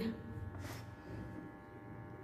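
Faint steady electrical hum with a buzzy edge, with a brief soft rustle about 0.7 s in.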